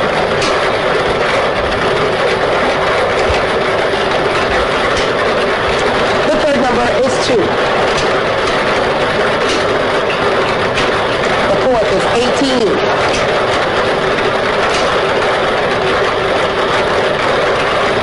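Lottery ball-draw machine mixing its numbered balls: a steady rushing noise with the balls clattering continuously against the chamber.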